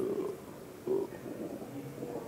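Faint, muffled murmur of a voice hesitating between words, twice, over quiet room tone in a lecture hall.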